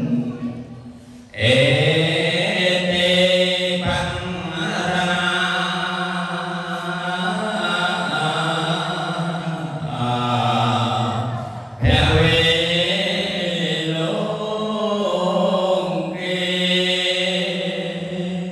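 An elderly man chanting Khmer Buddhist verses into a microphone in long, sustained melodic phrases. He breaks for breath about a second in, again near four seconds, and near twelve seconds.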